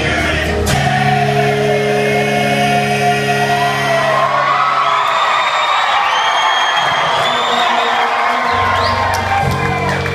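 Live solo performance, a singer with guitar, heard from among the audience in a large hall. A held guitar chord rings until about five seconds in and then drops out while the singing carries on with whoops from the crowd. The guitar comes back in near the end.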